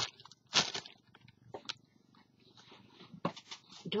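A few brief rustles and light knocks from a clear plastic bag of paint bottles being handled and set down on a table, the loudest about half a second in, with smaller clicks near the end.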